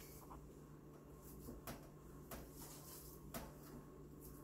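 Near silence: room tone with a faint steady low hum and a few faint, short clicks.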